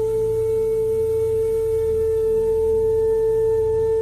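Bansuri (Indian bamboo flute) holding one long, steady note over a low sustained drone.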